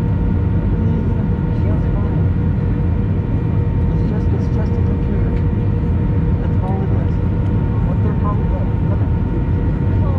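Steady jet airliner cabin noise in flight: the drone of the engines and airflow, with a steady two-note hum running under it.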